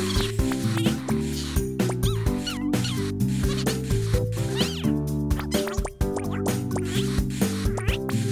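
Cheerful children's cartoon music with a steady beat, over short high squeaky vocal sounds that glide up and down in pitch, typical of small animated characters chattering.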